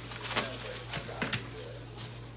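Thin clear plastic food-prep glove crinkling and crackling as it is pulled onto a hand, a few sharp rustles, the last two close together, over a steady low hum.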